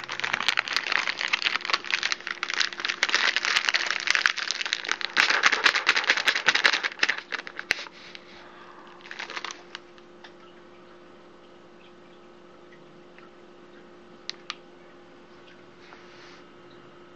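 Plastic snack bag crinkling loudly as it is handled and tipped up to the mouth, a dense crackle for about seven seconds, then a shorter rustle a little later. After that only a low steady hum and two faint clicks remain.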